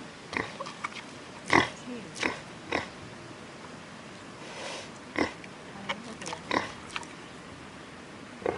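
Wild boar grunting: about a dozen short, irregularly spaced grunts, the loudest about a second and a half in.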